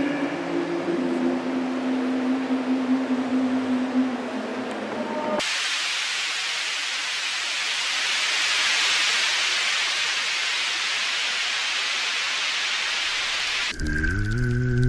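Electronic soundscape: a low held drone with a few steady tones under a hiss. About five seconds in it cuts off suddenly, leaving a steady, even hiss of noise that runs until just before the end.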